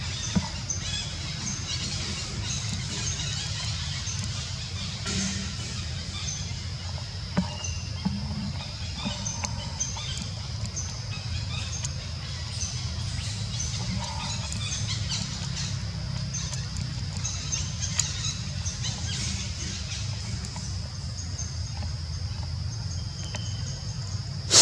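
Outdoor ambience: birds chirping over a steady high-pitched drone and a constant low rumble, with a few sharp clicks.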